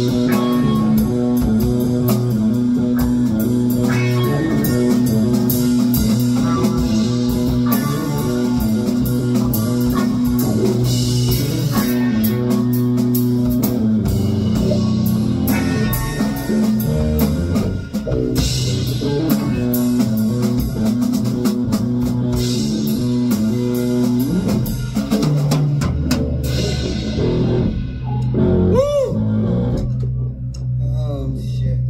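Live instrumental rock jam on electric guitars and drum kit, with sustained low notes under steady drumming. About four seconds before the end the drums drop out, leaving held guitar notes and a wavering, bending note.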